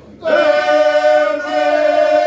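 Group of men singing ganga, unaccompanied Herzegovinian folk song: after a short breath pause, the voices come in together about a quarter second in and hold long, sustained tones.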